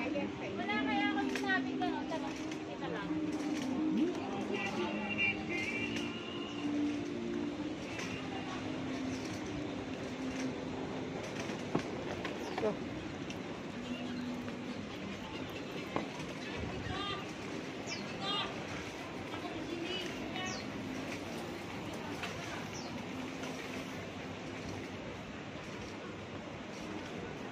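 Busy street market ambience: passers-by's voices over a steady hum of street noise, with a few short high chirps in the second half.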